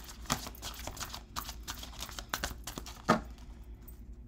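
Tarot cards being shuffled and handled: a run of quick papery flicks and taps, with one sharper slap of a card about three seconds in.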